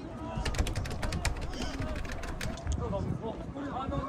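Background chatter of a crowd of people outdoors. A quick, irregular run of sharp clicks comes in the first three seconds.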